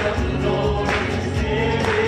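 A live worship band: several voices singing a gospel worship song together over keyboard and acoustic guitars, with sustained bass notes underneath.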